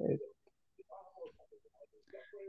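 Faint, broken-up speech from a participant over a video call, with a slightly louder bit of voice right at the start.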